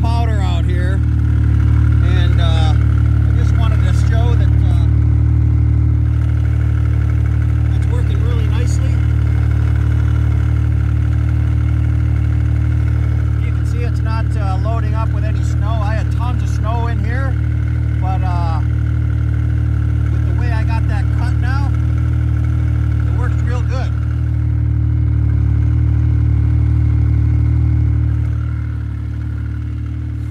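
Yamaha turbo snowmobile engine idling steadily at an even, unchanging pitch.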